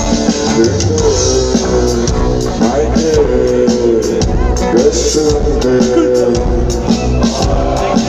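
Loud live band music from a festival stage's sound system, heard from inside the crowd: drums, bass and guitar with a voice over them.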